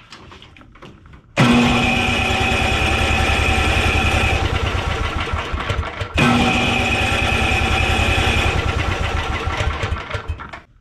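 Briggs & Stratton Intek 12 hp OHV single-cylinder snowblower engine cranked by its electric starter in two long bursts, about five and then four seconds, with a fast even chugging. It turns over without catching: the ignition is grounded out by the throttle and the spark plug's insulator is broken.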